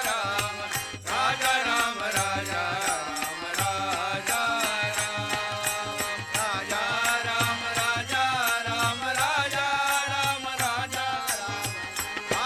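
Men's voices singing a devotional chant in chorus, accompanied by tabla and harmonium. A steady beat of about three clicks a second comes from hand claps and small hand-held clappers.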